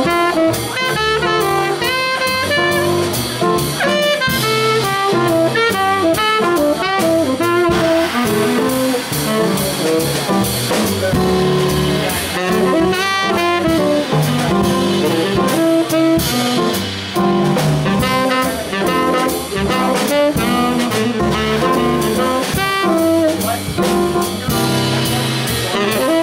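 Small jazz combo playing: a saxophone solos in quick runs of notes over a plucked upright double bass and a drum kit.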